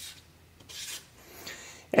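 Felt-tip marker drawing a line across a white drawing board: two short rubbing strokes, one about half a second in and one near the end.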